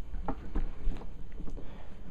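Cardboard shipping box and foam packing being handled: soft rustles and a few light knocks over a low rumble of handling noise.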